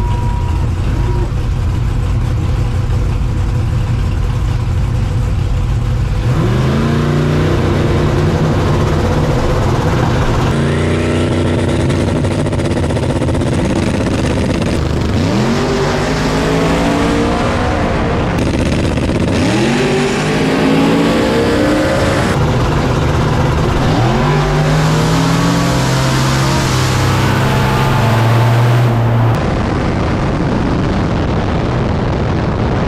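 A no-prep drag car's engine running low and steady at first, then going to full throttle about six seconds in. The pitch climbs in repeated rising sweeps as it pulls through the gears, with the run starting over in several places.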